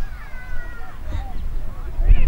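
A spectator's drawn-out, high-pitched shout, slowly falling in pitch over about a second, among scattered calls from the crowd, over a low rumble of wind on the microphone.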